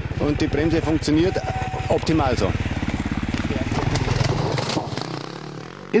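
Single-cylinder engine of a Husqvarna TE449 enduro motorcycle running under way on a dirt descent, a fast even rattle of firing pulses with a brief rise in revs about two seconds in. It fades out about five seconds in.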